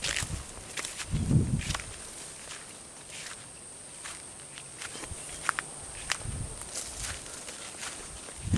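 Footsteps through grass and scrub with brush crackling, soft thuds about a second in and again near six seconds, and scattered sharp ticks. A faint, steady high-pitched tone runs behind.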